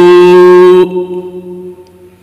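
A man chanting an Arabic supplication, holding one long vowel at a steady pitch; the note breaks off a little under a second in and dies away.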